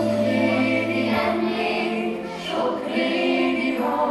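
Children's choir singing together over low, long-held accompaniment notes.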